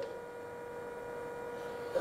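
A faint, steady electrical hum, one even tone with a fainter higher one, over quiet room noise.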